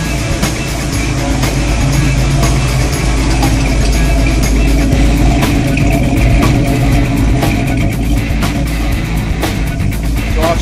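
Rock music with a steady drum beat, over a Boss 302 V8 engine running on a chassis dyno.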